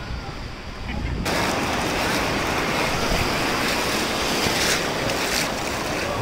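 Wind rumbling on the microphone, then after an abrupt cut about a second in, a loud steady wash of sea surf breaking and running up the shore, with wind buffeting the microphone.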